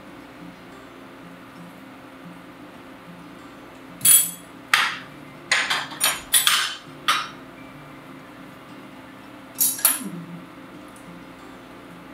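Kitchen utensils clacking and knocking on the countertop and pan: a quick run of about seven sharp knocks a third of the way in, then two more near the end.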